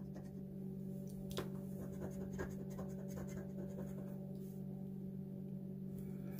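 Metal bottle-opener edge scraping the latex coating off a scratch-off lottery ticket in short scratches, the coating hard to scratch, over a steady low hum.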